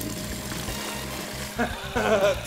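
Water pouring from a plastic jug into a plastic bucket, a steady splashing rush that stops near the end, under background music.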